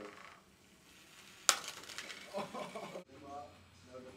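A single sharp crash of Lego robots colliding about a second and a half in, as one robot is smashed apart, followed by a short rattle of loose plastic pieces.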